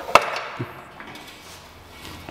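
Cut pieces of gypsum plaster cornice knocked against the mitre saw and floor as they are handled: one sharp knock just after the start, then two light taps.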